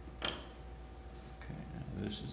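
One sharp click with a brief metallic ring about a quarter second in, then faint handling noise as metal alligator-clip electrodes are moved about.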